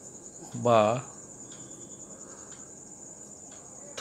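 Crickets trilling steadily: a continuous high-pitched buzz. A single short spoken syllable comes just under a second in.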